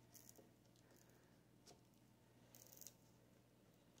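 Near silence, with a few faint brief scrapes and a click from silicone-tipped tongs working a waffle off the waffle iron's plate.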